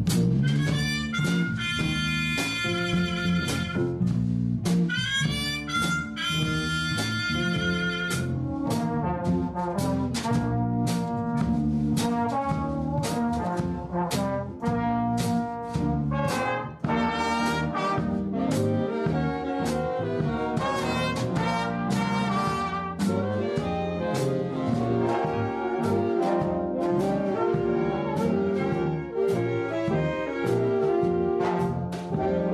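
Swing big band playing after a count-in: trumpets and trombones over an electric bass and rhythm section. It opens with two long held brass chords, each with an upward slide into it, then moves into a busier passage.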